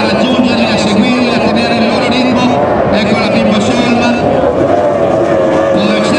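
Formula 2 racing powerboats' outboard engines running flat out as the boats pass, a continuous high drone whose note steadies in the second half. A voice, likely a loudspeaker commentator, talks over the engines.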